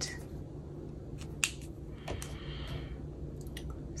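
Pen writing on a paper ledger page: a short scratchy stroke about two seconds in, with a few light clicks and taps around it.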